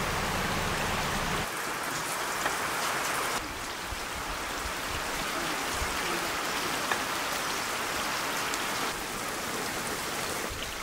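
Grated onion frying in hot oil in a large wok, sizzling steadily, with a few faint ticks. The sizzle drops in loudness a few times.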